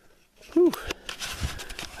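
A man's winded 'whew', then heavy breathing, a footstep thump and a few sharp clicks from handling and brush as he climbs a steep hillside out of breath.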